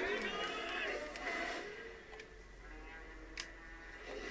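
A boy laughing and talking under his breath. Near the middle it drops to a faint background of voices and music.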